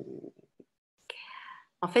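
A woman's speech pausing: the tail of a drawn-out 'euh', a short audible breath with a lip click about a second in, then 'en fait' near the end.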